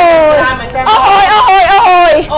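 A loud, very high-pitched voice: a long drawn-out call falling in pitch, then excited, broken vocalizing.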